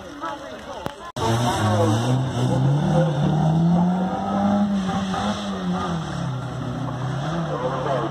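A banger racing car's engine revving hard as it drives along the track, starting suddenly about a second in; its pitch climbs, eases off and climbs again. A laugh comes just before the engine cuts in.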